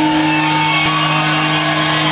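Live punk rock band's electric guitars holding a sustained chord that rings steadily, with no drumbeat under it.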